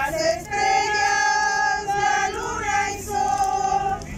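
A group of women singing a hymn together, holding long sustained notes.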